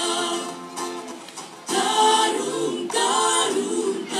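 Mixed male and female vocal group singing a West Sumba regional song in harmony through microphones. The voices soften about a second in and come back at full strength just under two seconds in.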